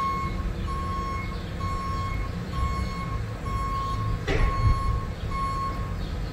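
A vehicle's reversing alarm beeping steadily, about one beep a second, over a low engine rumble. A dog barks once a little past four seconds in.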